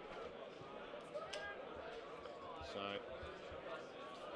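Faint voices of spectators and players calling around a suburban football ground, with a commentator saying "so" about three seconds in.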